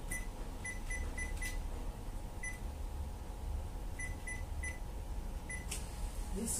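Short electronic beeps at a shop checkout, about ten of them in small uneven runs, with a low steady hum under them.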